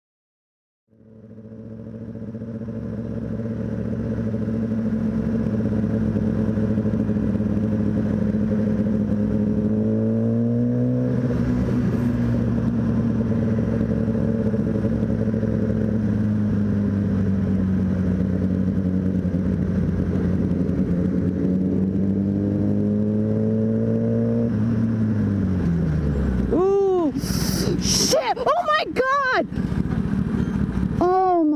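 Sport motorcycle engine running steadily at freeway speed under a rush of wind noise. It rises in pitch as the bike speeds up about a third of the way in, then falls as the bike slows near the end. The engine note then stops, and there are a few sharp loud noises and raised voices.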